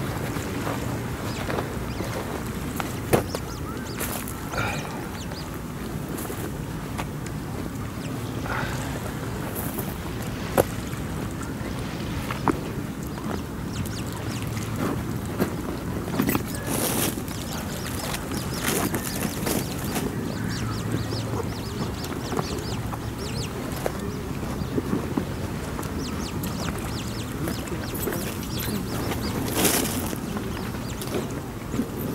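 Eurasian coots, adults and chicks, giving short calls now and then over a steady low rumble, with a few sharp clicks.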